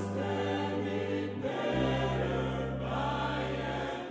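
Live ensemble music: a vocal group singing long held chords over sustained low bass notes, with a new, lower bass note coming in a little under halfway through.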